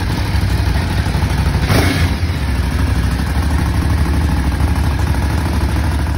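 Red motorcycle's petrol engine idling steadily just after being started, a deep low rumble with one short rise in pitch about two seconds in.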